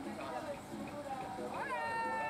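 People's voices talking, then one voice sweeping sharply up in pitch near the end into a long drawn-out call.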